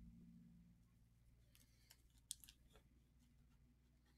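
Near silence: a faint low hum with a few soft clicks about halfway through.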